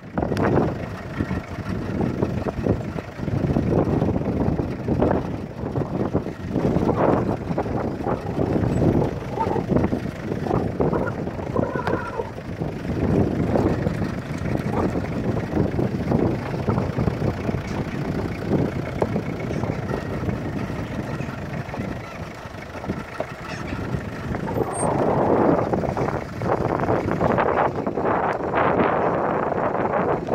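A car moving slowly over a rough dirt track, heard from inside the cabin, with wind buffeting the microphone in irregular gusts.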